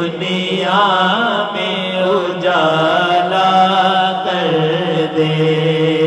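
Unaccompanied male voices chanting an Urdu naat: one voice holds long notes with wavering, ornamented turns of pitch, over a steady held drone of other voices.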